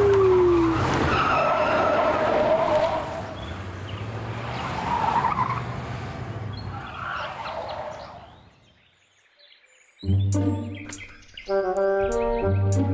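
Cartoon pickup truck's engine running and tyres skidding on a dirt road as it speeds off, the sound fading away over several seconds. After a brief hush, background music starts near the end.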